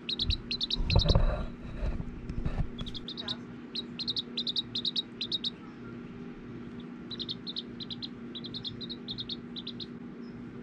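A Serama bantam chick peeping in quick runs of short, high chirps, broken by pauses. A louder rustling thump about a second in comes from handling.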